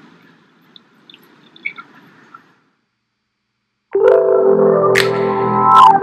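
Faint room tone with a few small ticks, then a second of dead silence, then background music cuts in abruptly about four seconds in, with held notes and a few sharp hits.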